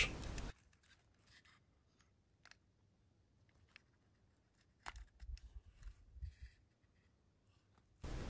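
Near silence with a few faint small clicks and scrapes, clustered about five seconds in, from a soldering iron and fingers working the wires on a small circuit board in a plastic battery box while desoldering.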